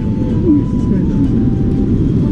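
Wind buffeting the microphone in a loud, fluttering low rumble, with a brief sound from a person's voice about half a second in.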